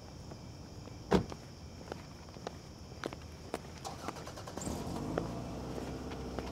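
A car door shuts with a thud about a second in, followed by a run of footsteps on asphalt. Near the end a car engine starts and settles into a steady idle.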